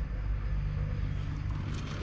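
A steady low rumble with a faint hiss above it, with no clear strokes or events.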